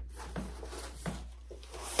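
A rolled shelf liner being handled and tossed aside: a few light rustles and soft knocks, over a faint low steady hum.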